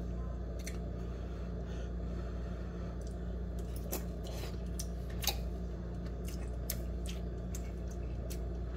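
Eating sounds from an instant noodle cup: a utensil clicking and scraping against the cup while noodles are stirred and lifted, then chewing. Scattered short clicks sit over a steady low hum.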